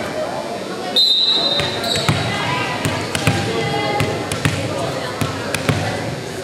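A referee's whistle blows once for about a second. Then a volleyball bounces several times in an uneven rhythm on the hardwood gym floor.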